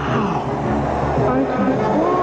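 Orchestral score with a whooshing fly-by sound effect: a tone sweeps steeply down in pitch right at the start, with more pitch swoops near the end, like something flying past.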